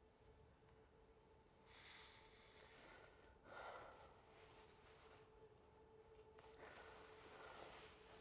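Near silence: a few faint breaths or sighs, three soft swells, over a faint steady hum.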